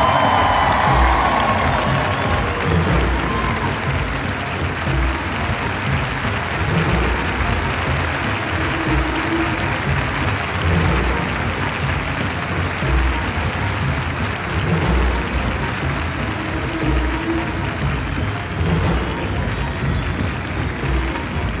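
Audience applauding, with music that has a recurring bass beat playing under the applause.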